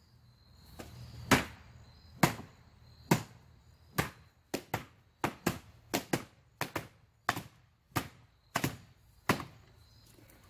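Hard chopping blows from a long-handled tool striking an old couch, about sixteen sharp whacks. They are spaced about a second apart at first, then come faster, two or three a second, through the middle.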